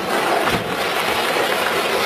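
A car driving close past the camera: a steady, loud rushing noise of engine and tyres.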